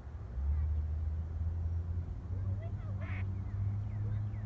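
Ducks on a pond calling with short quacks, including a brief harsher quack about three seconds in, over a steady low hum that starts about half a second in.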